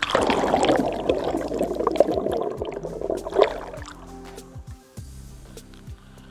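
Water churning and bubbling around an underwater camera for the first three and a half seconds or so, then fading away. Background music plays throughout.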